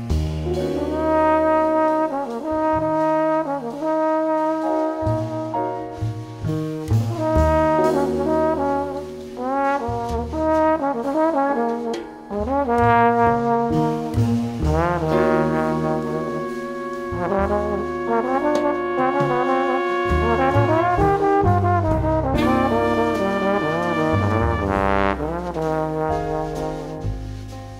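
Trombone playing a melody with some bending notes over a jazz band: drums played with brushes, electric guitar and bass.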